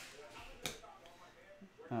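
Quiet handling of trading cards on a tabletop, with one sharp click about two-thirds of a second in, as of a rigid plastic card holder being set down.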